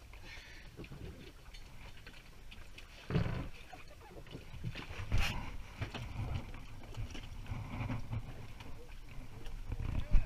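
Bumps, knocks and rustling of people moving about in an inflatable dinghy alongside a sailboat, over a low rumble of wind and handling on the microphone. The loudest thump comes about three seconds in, with another sharp knock about two seconds later.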